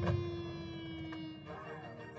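Marching band holding a long note that slowly sags in pitch, with a drum hit right at the start; the held note stops about one and a half seconds in and quieter woodwind playing takes over.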